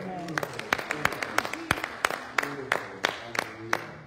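People clapping their hands in a steady rhythm, about three claps a second, with voices over the clapping.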